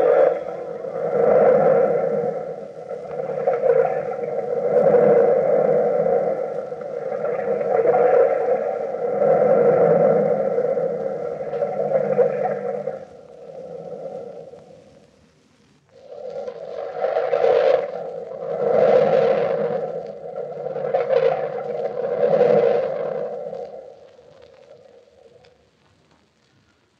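Radio-drama vocal effect of an invisible beast moaning and sobbing as it struggles: a run of wavering moans about one every second and a half. They break off for a few seconds a little past halfway and fade out near the end.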